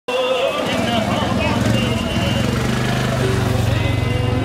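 Busy street ambience: people talking close by, over the steady low hum of an engine running.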